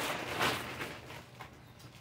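Plastic bag rustling and crinkling as handbags are stuffed back into it. It is loudest about half a second in, then fades.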